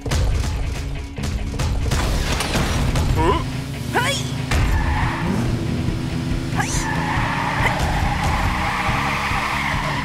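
Cartoon action soundtrack: a dramatic music score under loud rumbling, whooshing battle sound effects as a giant robot moves. There are a couple of brief shouts about three to four seconds in.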